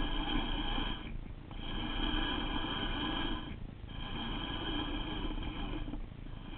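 Baitcasting reel cranked to retrieve a lure, its gears giving a steady whir that stops twice for short pauses in the winding.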